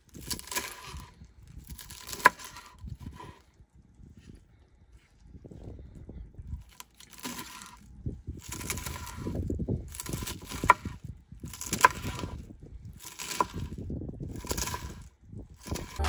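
A kitchen knife cuts through crisp lettuce leaves on a wooden cutting board in slow separate strokes. Each stroke gives a short crunch, and several end in a sharp knock of the blade on the board. The cutting pauses for a few seconds before the middle, then goes on more steadily.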